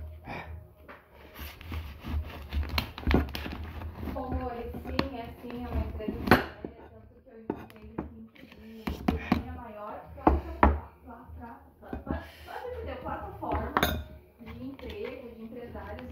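A large knife cutting open a plastic bottle, with metal utensils knocking, clinking and scraping against a glass dish: many sharp clicks and knocks scattered throughout.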